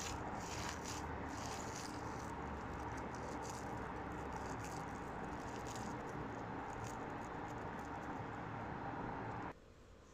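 Hand squishing and kneading raw minced beef in a stainless steel bowl, faint wet clicks over a steady background hiss that cuts off abruptly near the end.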